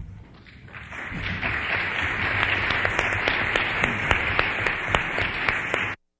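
Audience applauding, swelling in about a second in and cut off suddenly near the end.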